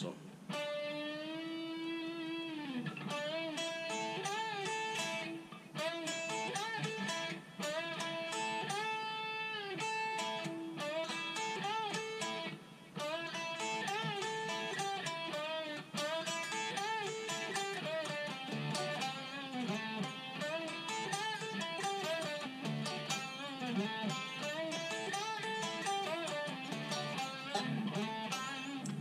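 Electric guitar playing a lead lick of single notes with repeated string bends that rise and fall, and some held notes with vibrato, played over and over as a practice phrase.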